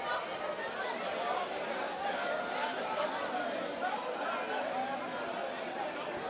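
Faint, indistinct chatter of several people's voices, from players and spectators around the pitch, with no single voice standing out.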